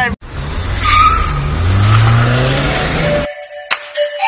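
A motor vehicle engine revving up, rising in pitch amid a loud rushing, skidding noise, which cuts off suddenly about three quarters of the way through; a steady musical tone and a few sharp clicks follow as music begins.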